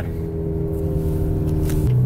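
APR Stage 2–tuned Audi A3's turbocharged four-cylinder engine pulling the car up to speed, heard from inside the cabin: a steady drone growing slowly louder. Just before the end the engine note drops lower and gets louder.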